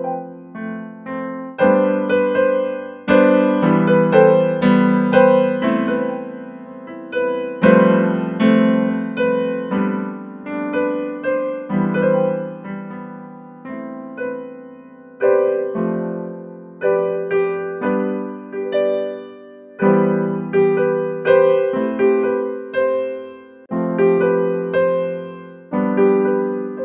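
Digital keyboard with a piano voice playing a slow chord progression (F, A minor, G, E minor) in the left hand under right-hand notes held on B and C. A new chord is struck about every one to two seconds, and each one fades before the next.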